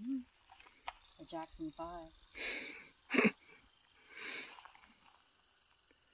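Soft, wordless human voice sounds: a few faint murmured, wavering calls, then breathy puffs and a short sharp breath about three seconds in.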